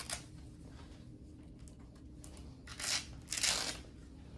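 Velcro straps on a cervical neck collar being ripped open: two short rasping tears about three seconds in, half a second apart.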